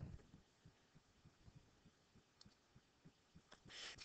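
Near silence: faint room tone with a few soft, irregular low thumps.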